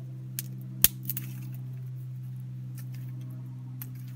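A steel knife struck against a fire-starting stone to throw sparks onto char cloth: a few sharp clicks, the loudest just under a second in, over a steady low hum.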